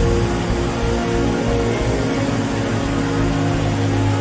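Background worship music of long held chords with a deep bass, under a large congregation praying aloud all at once.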